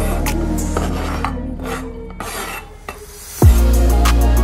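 A knife blade scraping chopped onion and coriander off a chopping board into a bowl, over background music. The music thins out in the middle and comes back with a heavy bass beat near the end.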